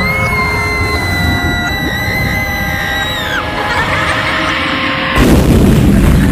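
Dark horror-themed soundtrack music: a long high wailing note rises, is held for about three seconds over sustained chords, then falls away. About five seconds in, a loud crash-like explosion effect hits.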